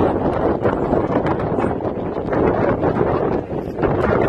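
Strong wind buffeting a phone's microphone: a loud, uneven rumble of noise that rises and falls in gusts, easing briefly near the end.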